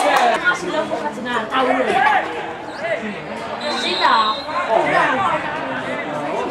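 Several voices talking and calling out at once, in a steady chatter of spectators. A short, high, steady tone sounds a little over halfway through.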